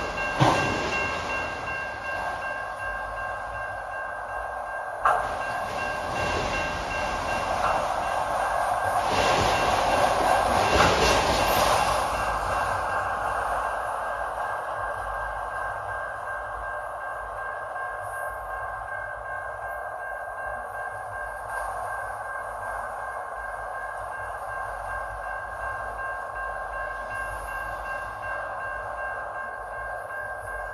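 Autorack freight cars rolling past: the steady rumble and clatter of steel wheels on rail. There are sharp clanks about half a second in and again about five seconds in, and it grows louder for a few seconds around the middle.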